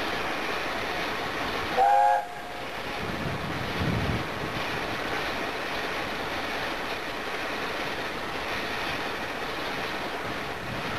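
Steam locomotive whistle giving one short blast about two seconds in, over a steady rushing noise, with a brief low rumble a couple of seconds later.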